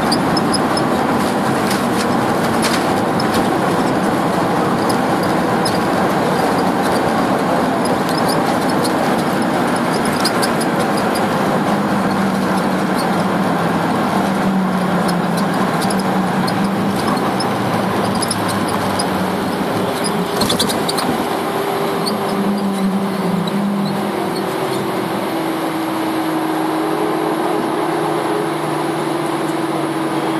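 Boeing 737-300 cabin noise heard from over the wing as the airliner rolls along the runway after landing: a steady roar from the CFM56-3 engines and the wheels, with frequent small rattles of cabin trim. A low hum shifts in pitch partway through, and a steadier higher tone comes in near the end as the noise eases slightly.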